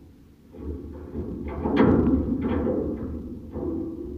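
A man breathing hard, with forceful exhales, while straining through push-ups. A low rumble sits on the microphone underneath, and the loudest exhale comes about two seconds in.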